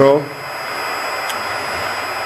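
GMT 3 kW air-cooled CNC milling spindle, driven by a Fuling inverter, running steadily at high speed, about 15,000 rpm: an even rushing hiss of its cooling fan with faint high steady whine tones.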